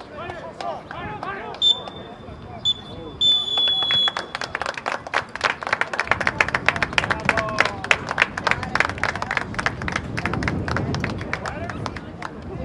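Referee's whistle blown three times, two short blasts and then a longer one, ending the first half. Spectators clap for several seconds afterwards, with some shouting voices.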